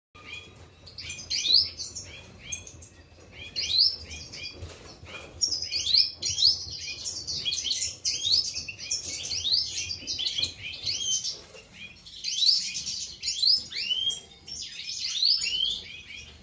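European goldfinches chirping and twittering: a steady run of short, high calls that glide quickly in pitch, a few louder bursts among them.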